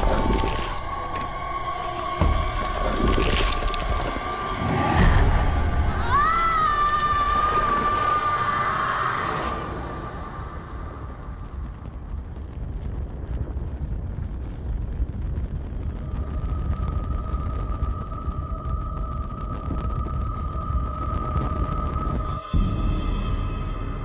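Horror-film sound design: sudden hits, then about six seconds in a long wailing shriek that rises in pitch and holds for a few seconds as the krasue ghost bares her teeth. It thins to a low, ominous rumbling drone, joined by a steady high tone about two-thirds of the way through.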